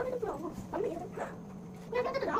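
A small child's high-pitched wordless vocalizing in several short calls, the pitch sliding up and down.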